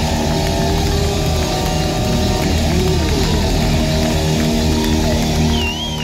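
Hard rock band playing live, heard loud from the crowd: distorted guitars and bass holding long notes over the drums. Near the end the level drops a little and a high whistle wavers up and down.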